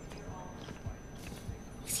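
A few faint, irregular footsteps on a hard floor over a low, steady background.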